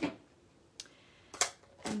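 A faint click, then a sharper click about half a second later, from stamping supplies being handled on a craft table.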